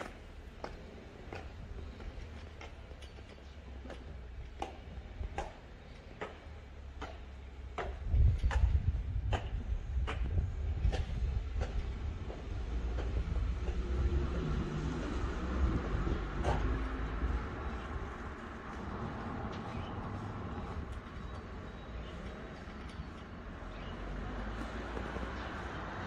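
High-heeled boots clicking step by step on cobblestones and stone stairs, about three steps every two seconds, for the first half. From about eight seconds a low rumble sets in and is the loudest sound, and a steady hum joins it and carries on to the end.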